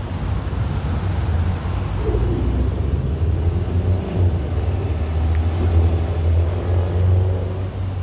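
A vehicle engine idling: a steady low rumble.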